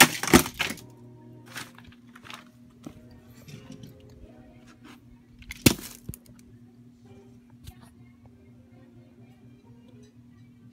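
A red plastic toy figure being struck and broken apart: a loud sharp crack right at the start and another about five and a half seconds in, with smaller knocks and rattles of plastic between. Faint steady background music runs underneath.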